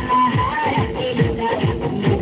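Live folk dance music: barrel-shaped hand drums beaten in a steady rhythm, about two or three deep strokes a second, each dropping in pitch, under a high wavering melody line.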